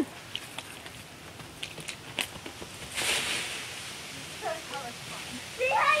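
Dry leaves in a raked leaf pile rustling and crackling as someone moves through them, with scattered crackles and a louder rustle about three seconds in.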